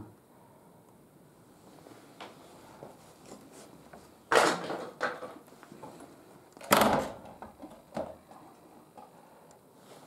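Two short, loud scraping knocks about four and a half and seven seconds in, with a few fainter knocks between them: loose wooden boards being shifted in a small stone room.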